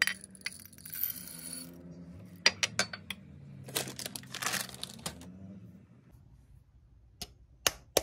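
Chocolate chips poured from a small drinking glass into a square glass bowl, rattling and clinking against the glass, followed by more clinks of glass bowls on a stone counter. Near the end, a few sharp taps of eggs being knocked together.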